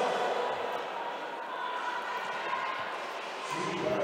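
Roller derby pack play on a sport-court floor: a steady rush of many roller skate wheels rolling, with a few dull knocks of skates and bodies in the hall.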